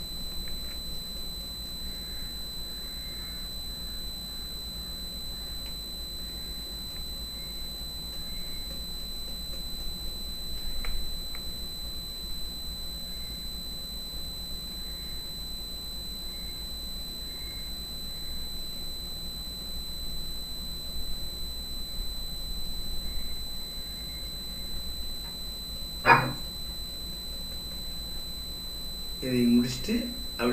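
Quiet background of a steady electrical hum with a constant high-pitched whine. A faint click comes about eleven seconds in, and a single brief, sharp, louder sound comes near the end.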